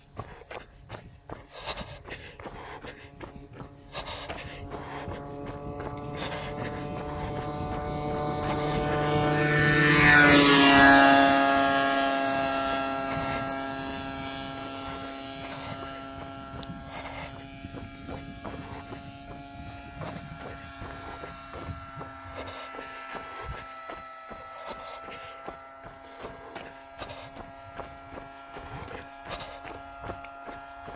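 A motor vehicle passing by on the road. Its buzzing engine note grows louder to a peak about ten seconds in, drops in pitch as it goes past, then carries on fainter and steady.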